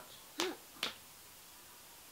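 Two sharp smacks about half a second apart, a toddler's hands slapping a man lying on a bed, the first with a short squeal from the child; then only quiet room noise.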